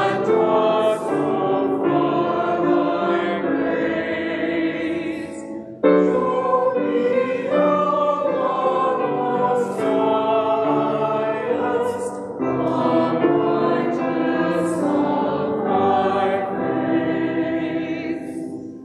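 A hymn sung by a group of voices with grand piano accompaniment, in long held phrases with short breaks between them about six and twelve seconds in.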